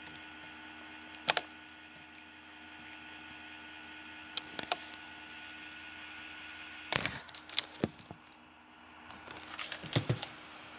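Sharp clicks from working a laptop: a pair about a second in and another pair about four and a half seconds in, then a cluster of knocks and handling noise near the end. A steady faint hum runs underneath.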